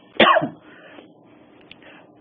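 A man's single short cough, about a quarter of a second in.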